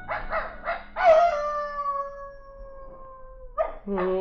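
Radio-drama animal sound effect: a canine yips three times in quick succession, then gives one long howl that falls slowly in pitch and fades out after about two and a half seconds.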